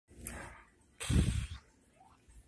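A dog sniffing close to the microphone: two short breathy snuffles, the second louder, about a second in.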